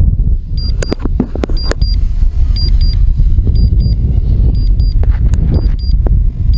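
Strong wind buffeting the microphone, a heavy rumble throughout. Short high electronic beeps, mostly in pairs, repeat every second or so.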